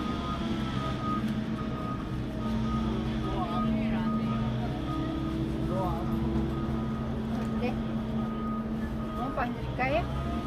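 Busy street ambience: a vehicle engine running steadily, with faint voices of passers-by.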